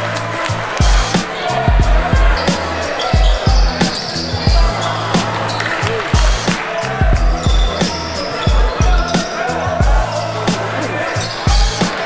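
Music with a steady beat of deep kick-drum thumps over a held bass line.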